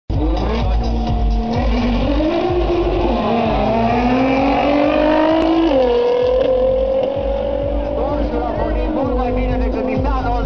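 Nissan GT-R R35 twin-turbo V6 and Porsche 997 Turbo twin-turbo flat-six launching hard in a drag race. Their engines rise in pitch through the gears, with upshifts about a second and a half, three and a half, and nearly six seconds in, then hold a steadier note.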